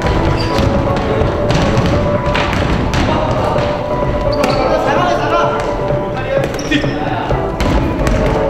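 Basketball bouncing on a hardwood gym floor and sneakers squeaking in brief high chirps during 3x3 play, over background music and voices in a large hall.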